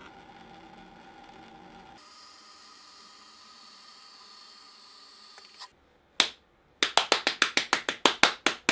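One person clapping: a single clap a little after six seconds in, then a fast run of hand claps, about seven a second, through the end. Before that there is only a faint steady background.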